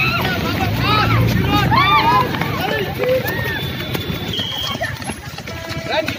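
A street crowd's voices: many short, high-pitched shouts and calls overlapping with chatter. A brief steady high tone sounds about halfway through.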